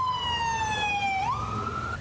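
Ambulance siren wailing: one tone falling slowly in pitch, then sweeping quickly back up about halfway through and climbing on.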